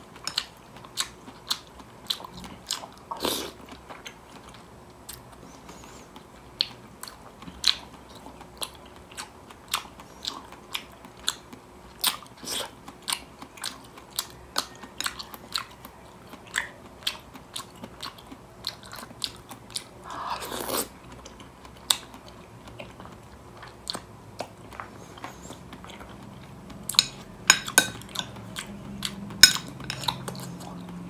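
Close-miked chewing of creamy fruit salad, with many short wet mouth clicks and smacks.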